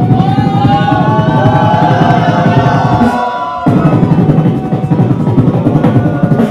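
Solo beatboxing into a handheld microphone, amplified: a dense, bass-heavy beat with a gliding vocal melody line layered over it. The beat cuts out for about half a second just past halfway, then comes back.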